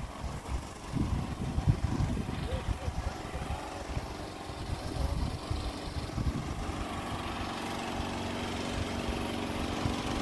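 A small engine running steadily at an even pitch, coming in about halfway and growing clearer toward the end: a motor-driven water pump. Before it, wind rumbles on the microphone.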